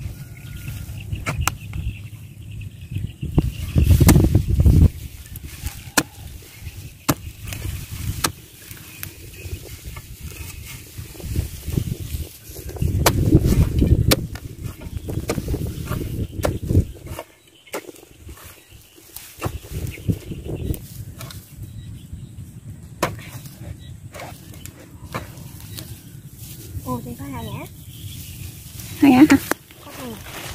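A long-handled spade chopping and levering into the clay soil and grass roots of a paddy bank: irregular sharp chops and scrapes, with two louder, lower stretches about four seconds and thirteen seconds in.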